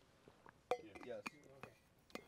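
A few sharp clinks of a metal water bottle being handled as it is lowered after a drink, the first and loudest about two-thirds of a second in.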